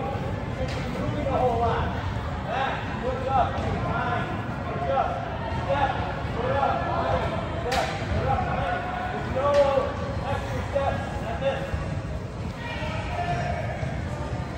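Young players' voices chattering in a large indoor hall while soccer balls are touched and kicked on artificial turf. A few sharper ball thuds stand out along the way.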